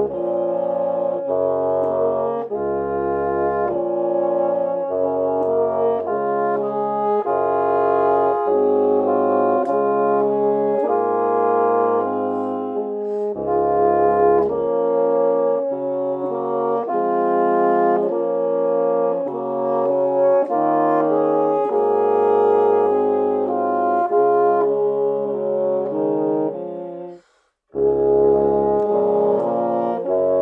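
Four bassoon parts playing in harmony, all by one player on a 1920s Buffet-Crampon bassoon. One part is live and three are pre-recorded. Sustained chords move note by note over low bass notes, with a brief full break near the end before the playing resumes.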